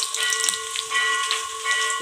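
Lentils and mustard seeds frying in hot oil in an aluminium kadai, with a light sizzle and a few scattered crackles. A steady tone runs underneath.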